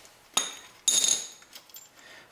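Two sharp metal clinks about half a second apart, the second ringing briefly: small steel hardware and hand tools knocking together as the brake caliper mounting bolts are handled.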